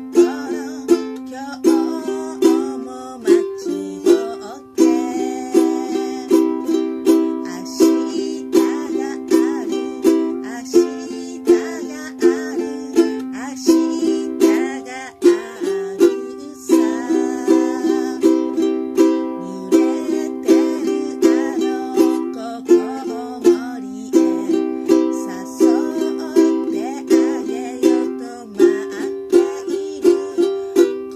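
Ukulele strummed in a steady, even rhythm through a chord progression, with a woman's voice singing along.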